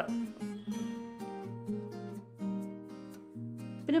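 Background music: an acoustic guitar plays a gentle run of plucked notes and chords.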